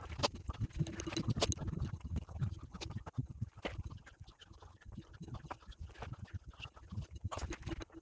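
Irregular low thumps and sharp crackling clicks of footsteps and rustling on a forest dirt track, with the knocks and rubbing of a handheld camera moving quickly.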